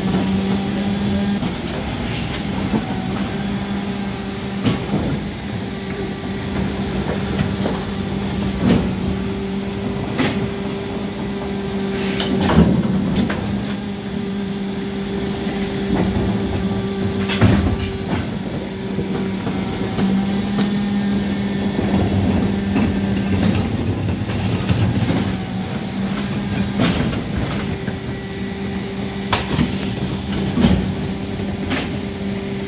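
Mercedes-Benz Econic bin lorry with a Geesink rear-loading body standing with its engine and hydraulics running in a steady hum, with scattered knocks and clatters from the rear bin lift as 1100-litre bins are handled.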